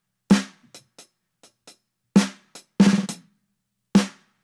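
Snare drum sample played through an FMR Audio RNC1773 compressor at a 4:1 ratio with the fastest attack and release. There are four loud hits with quieter ticks between them. The fast release brings up the sound of the room after each hit.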